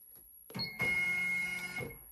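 Happy Japan HCS2 embroidery machine's hoop frame being driven quickly at its top jog speed: a steady motor whine that starts about half a second in, lasts about a second and a half, and stops just before the end.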